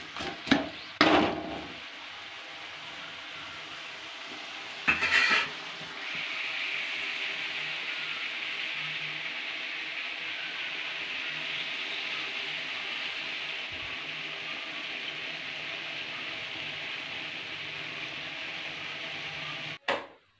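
Onions, tomatoes and dried red chillies frying in an aluminium kadai, with clinks and scrapes of a metal perforated ladle against the pan in the first couple of seconds and again about five seconds in. The sizzling steadies, grows louder about six seconds in, and keeps on evenly.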